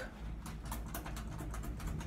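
Elevator car travelling, with a steady low hum and a rapid run of light, irregular clicks and rattles, about six or seven a second.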